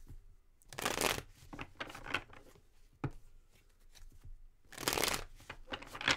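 A deck of tarot cards being hand-shuffled in short bursts, the loudest about a second in and near the end, with a single sharp tap about halfway through.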